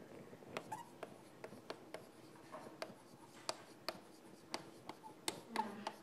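Chalk writing on a blackboard: faint, irregular taps and scratches as letters are formed.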